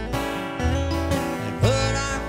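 Live country music: two acoustic guitars strumming over a 1952 Kay upright bass plucking low notes that change about every half second, with a short rising glide near the end.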